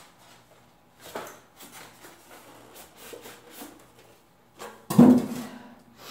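Foam packing blocks and a plastic-bagged speaker being handled: light rustling, scraping and small knocks, then one loud thump about five seconds in.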